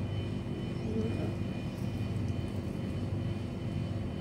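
A steady low mechanical hum with faint high whining tones, from a running appliance motor in the room.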